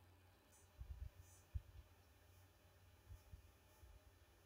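Near silence: faint room tone with a few soft, low bumps.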